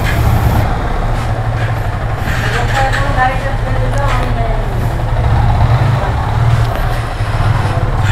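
Yamaha R15's single-cylinder engine running steadily with a low drone, then pulling away near the end.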